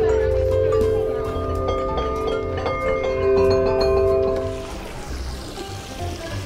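Outdoor metal chimes struck repeatedly with a mallet: several clear notes ring and overlap, then die away near the end.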